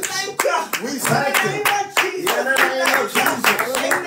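Hands clapping in a steady rhythm, about three to four claps a second, beginning shortly after the start, with a woman's voice carrying on underneath.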